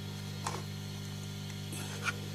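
Steady electrical mains hum, with a short light click about half a second in and a fainter one near the end as a screwdriver pries at the edge of an automotive ECU's metal case.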